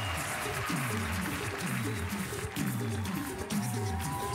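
A cappella group's vocal bass line, a low falling note repeated about twice a second, over a beatboxed vocal-percussion beat: the opening groove of an a cappella pop cover.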